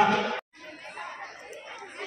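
A man's voice-over narration cuts off abruptly less than half a second in. It is followed by quieter background chatter of several people talking at once.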